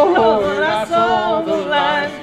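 A man and a woman singing a folk song together in harmony, with acoustic guitar accompaniment.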